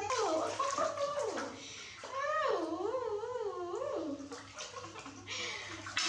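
Baby monkey crying: a run of long, wavering, whining calls that rise and fall in pitch. Water splashing in a metal basin joins in near the end.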